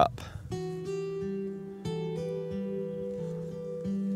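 Background music: an acoustic guitar playing slow plucked notes that ring on and overlap, starting about half a second in.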